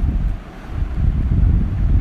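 Low rumble on the microphone, uneven and with little high sound, dipping quieter about half a second in.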